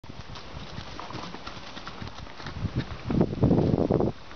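Horse hoofbeats on a soft dirt-and-straw yard, a scattering of dull knocks. About three seconds in, a louder rushing sound takes over and runs through the last second.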